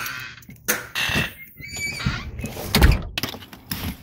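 Doors being handled: a house door shutting and a pickup truck's rear door opening, heard as several thunks and knocks, the loudest a little before three seconds in.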